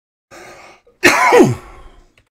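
A man coughs once, loudly, about a second in, the sound ending in a falling voiced tail; a short, much quieter breath comes just before it.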